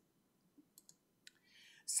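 Near silence with a few faint, sharp clicks, and a short soft intake of breath just before speech starts again.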